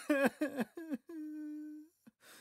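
A man crying: about five short sobs in quick succession, each falling in pitch, then one long steady wailing note held for most of a second.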